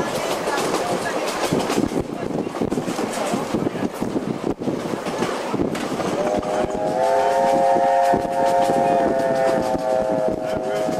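Railway carriage running along, its wheels clattering over the rails with a constant rumble. About six seconds in, the steam locomotive's whistle starts: one long steady chord of several notes at once, held for several seconds.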